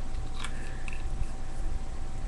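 Faint crackle and clicks of small plastic reagent dropper bottles being handled, over a steady low background hum.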